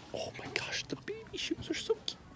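A man's voice: a quick run of short, half-whispered syllables, with words too unclear to make out.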